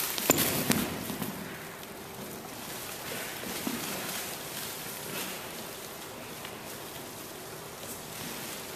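A few sharp knocks and thumps in the first second as a kick lands and a body drops onto a wooden gym floor, then quiet room tone with faint shuffling on the floor.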